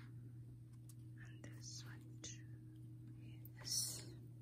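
A faint whispered voice with breathy hisses, the strongest near the end, and a couple of small clicks over a low steady hum.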